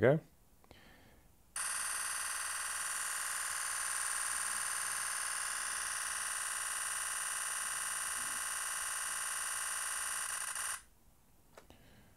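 Nikon Z9's simulated electronic-shutter sound firing a continuous 20-frames-per-second burst in High Efficiency★ raw. The rapid shutter clicks merge into a steady buzz for about nine seconds (about 182 frames) and cut off suddenly near the end, when the burst reaches the camera's buffer limit.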